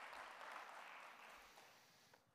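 Faint applause from an audience, fading away near the end.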